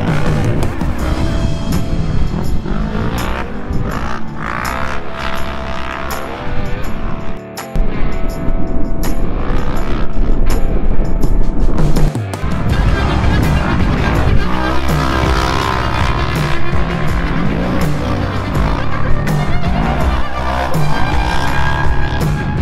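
Background music with a beat, mixed with side-by-side UTV race engines revving up and down as they drive through the dirt.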